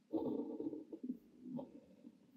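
Kaweco Liliput Brass fountain pen with an extra-fine nib scratching on paper while handwriting Korean: one longer stroke lasting most of the first second, then two short strokes.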